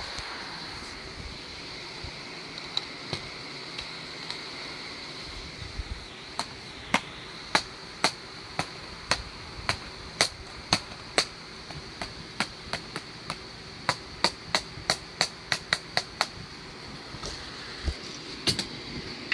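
A wooden stick striking plastic DVD cases again and again: sharp knocks, a few at first, then about two a second, coming faster near the end.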